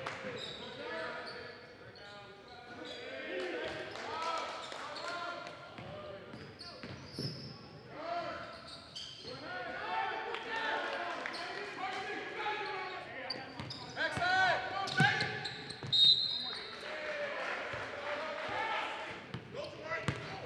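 Live basketball game sound in a gym: a ball dribbling on the hardwood floor, sneakers squeaking, and players and coaches calling out. There are a few sharper, louder moments about 14 to 16 seconds in.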